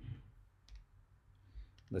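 A few faint computer mouse clicks, the clearest about a second in, as a dialog is confirmed and a menu opened.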